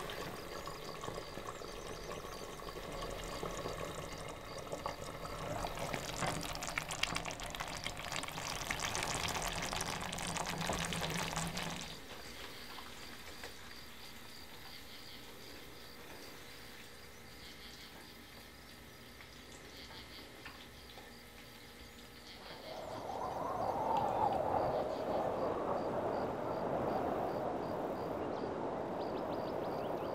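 Chicken and sauce sizzling and crackling in a frying pan over a portable gas stove burner, with a low steady hum underneath, both stopping abruptly about twelve seconds in. Quieter sounds follow as the pan's contents are poured out onto a plate. A steady rushing noise comes up in the last several seconds.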